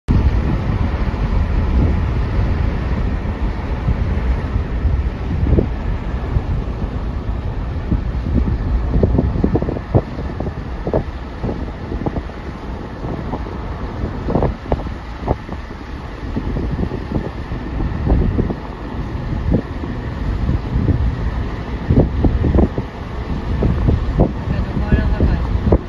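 Wind buffeting the microphone: a loud, uneven low rumble broken by frequent sharp gusts.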